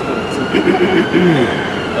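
A man laughing, over a steady din of city street traffic. A faint distant siren tone rises and falls slowly throughout.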